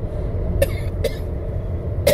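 A man coughing into his fist: two short coughs about half a second apart, then a stronger one at the end, over the steady low rumble of a car cabin.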